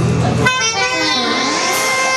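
Saxophones holding steady tones with electronic effects sweeping up and down in pitch, part of a loud free-improvised noise-rock passage; the low bass drone drops out about half a second in.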